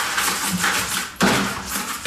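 Brush bristles scrubbing the inside of a wet plastic fermenter bucket: a scratchy scrubbing noise in strokes, with a sharper, louder stroke a little past halfway that fades off.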